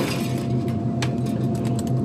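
Wire shelving in a freezer case clinking and clicking as it is handled, a single click about a second in and a few quick ones near the end, over a steady low machinery hum and a faint steady whine.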